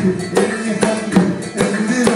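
Live music: a hand drum played in a quick, steady rhythm, with strong strokes about every 0.4 s and lighter ones between, over a held melody line.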